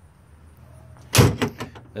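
A diamond-plate metal compartment door on the truck body clanks once, sharply, about a second in, followed by a few lighter knocks and rattles.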